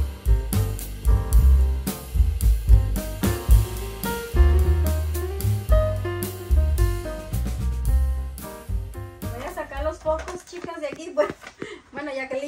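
Background instrumental music with a drum beat and heavy bass, which stops about nine seconds in; a voice speaking follows near the end.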